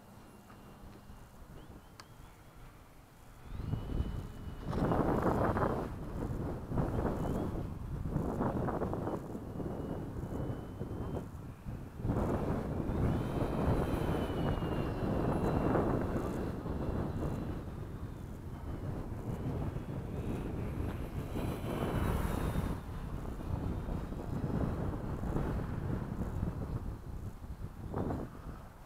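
Gusty wind buffeting the microphone, starting about three and a half seconds in and rising and falling, over the faint, shifting whine of a distant electric RC airplane's motor.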